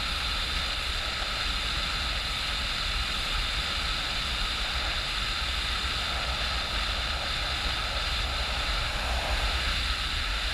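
Steady wind rush on a rider's camera microphone from riding a motorcycle at road speed, with a low rumble underneath.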